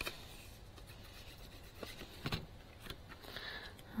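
Faint handling of paper and card: a few soft taps and light rubbing as small die-cut card pieces are glued and pressed onto a card.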